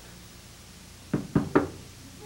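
Three quick knocks on a washroom stall door, about a second in.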